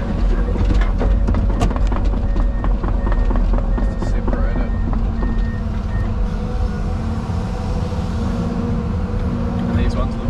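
Tracked excavator's diesel engine running steadily, heard from inside the cab, with hydraulics working as the boom and bucket move over a pile of broken concrete. Sharp knocks and clatter through the first half, with a thin steady whine in the middle.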